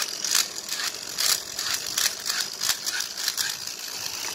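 Toy Beyblade pistol-style plastic launcher being pulled back to spin up its top: a quick, uneven run of ratchet clicks over a steady high whine from the spinning top and gears.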